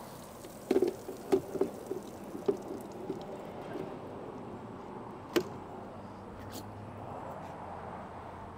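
Water dripping and trickling off a freshly hosed mobility scooter as it is handled, with one sharp click about five seconds in.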